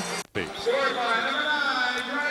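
Arena crowd voices, many people calling out at once and overlapping. The sound drops out briefly just after the start.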